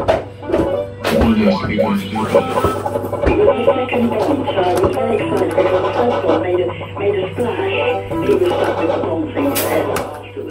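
Fruit machine electronic music, a busy run of short pitched notes, over a steady low hum, with a few sharp clicks.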